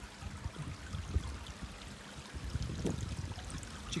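Pool water running and trickling steadily, with a low rumble underneath.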